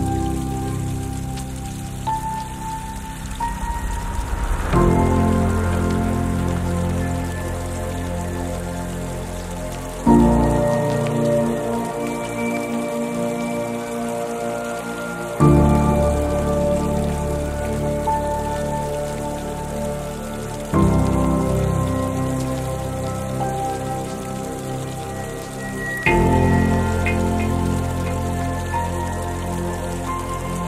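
Slow relaxation piano music over a steady sound of soft rain. A new chord is struck about every five seconds and fades away under the rain.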